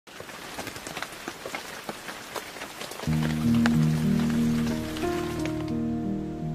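Rain pattering, a steady hiss dotted with sharp drop ticks. About halfway through, background music cuts in with sustained chords, louder than the rain.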